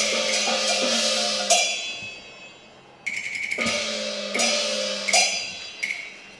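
Cantonese opera percussion ensemble playing a quick, even beat of strokes, broken three times by loud cymbal crashes that ring and fade. The first crash rings out for over a second before the beat starts again.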